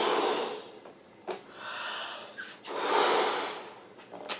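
A person blowing up a balloon: long, hard puffs of breath into the balloon, with quick breaths drawn in between.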